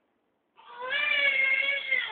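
A baby crying: one long, fairly even-pitched wail that starts about half a second in.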